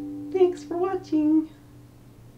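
The final strummed ukulele chord rings and fades away. Over it the player's voice makes three short sounds, starting about a third of a second in, and ending about a second and a half in.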